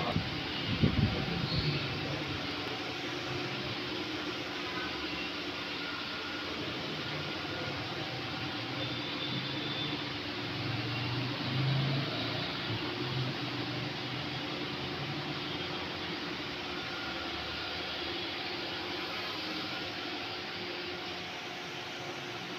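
Steady background noise, an even hum and hiss, with a single low thump about a second in.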